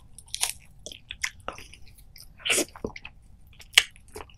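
Biting and chewing a lemon slice with its rind: a string of irregular wet clicks and crunches, the loudest a sharp one near the end.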